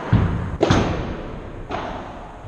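Padel ball impacts during a rally: three sharp knocks, the first two about half a second apart and the third about a second later, each echoing in a large hall.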